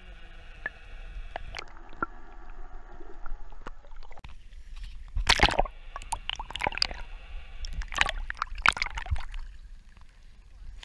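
Muffled sound from a camera held under the water: water sloshing and gurgling against it over a steady hum. There are loud splashes about five seconds in and again near the end.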